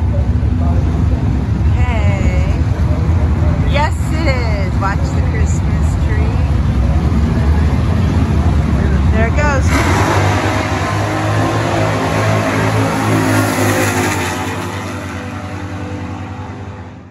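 Two drag-racing cars' engines rumbling at the starting line, then launching about ten seconds in and accelerating hard away down the strip, the sound fading near the end. People talking over the idle early on.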